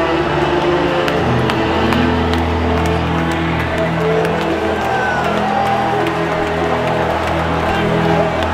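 Worship music of long held chords with a deep bass, the chord changing about a second in, under a congregation's scattered shouts and cheers of praise, with sharp claps.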